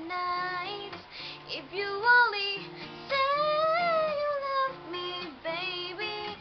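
A woman singing a slow ballad to her own acoustic guitar accompaniment, holding one long, gently bending note in the middle.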